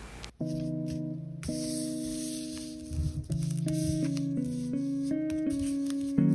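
Background music: held keyboard notes and chords changing pitch step by step, coming in suddenly a moment after the start following a brief drop to silence.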